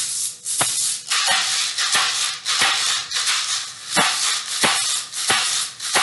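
A pair of homemade maracas, small plastic bottles filled with rice and dried corn, shaken in a steady rhythm: a hissing rattle of grains with a sharp start roughly every two-thirds of a second.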